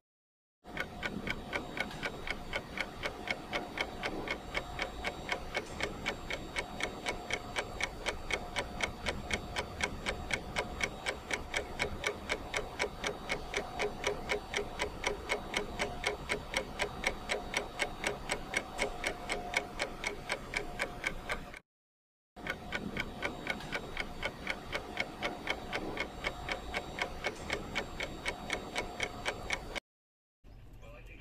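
Ticking-clock timer sound effect: fast, even ticking that drops out briefly right at the start and again about two-thirds of the way through.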